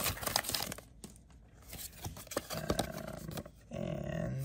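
Foil Pokémon booster pack wrapper crinkling and tearing open, busiest in the first second, then softer scattered rustling as the pack is handled.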